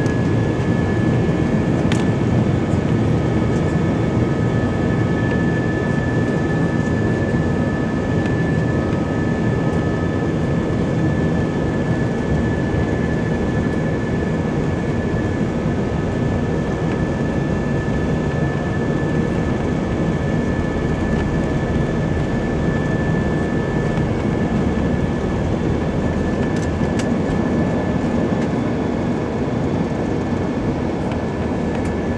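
Airbus A319 passenger cabin during the takeoff roll: jet engines at takeoff thrust with one steady high whine over a loud rumble from the wheels on the runway.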